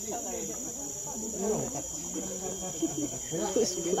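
A steady, high-pitched insect chorus trilling without a break, with people talking indistinctly underneath.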